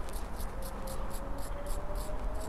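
A small wire brush scrubbing carbon off a spark plug's electrode and threads, an even scratching of about four to five strokes a second.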